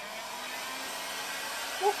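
Handheld electric heat gun switched on and running steadily, its fan blowing with an even rushing hiss.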